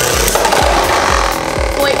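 Two Beyblade Burst tops, Spriggan Requiem and Legend Spriggan, spinning and scraping against each other and the plastic stadium floor after launch, heard as a steady hissing grind. Background music with a steady beat plays over it.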